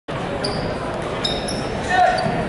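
Basketball game sound in a large gym: a ball being dribbled on the hardwood under crowd chatter, with two short high sneaker squeaks.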